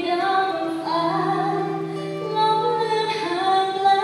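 A woman singing a slow Thai pop ballad live, holding long notes, with acoustic guitar accompaniment.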